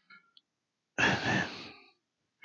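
A man's sigh, a short breath blown close to a headset microphone, about a second in and lasting under a second.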